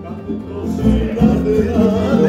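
Live violin and acoustic guitar playing together, the guitar keeping a steady repeating rhythm under the bowed violin line; the music swells again about half a second in.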